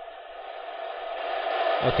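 Retevis MA1 mobile radio's speaker giving a steady static hiss, growing gradually louder as the volume knob is turned up.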